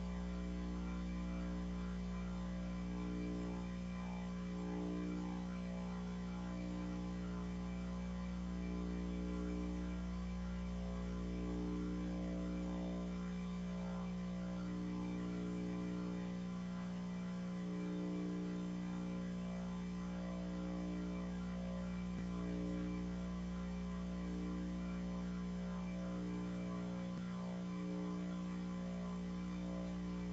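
Steady electrical mains hum, a buzzing drone made of several steady tones, with a slow, even pulsing in one of its tones.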